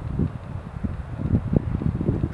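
Wind rumbling on the microphone outdoors, with a few short knocks scattered through it.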